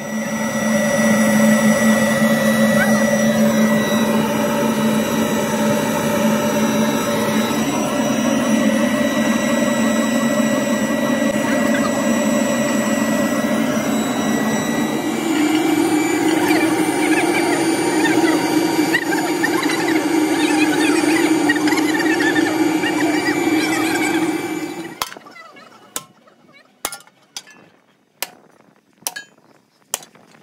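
Forced-air burner of a metal-melting furnace, running with a loud steady whine and hum; its pitch steps up about halfway through. Near the end it cuts off suddenly, and a few sharp metal knocks follow.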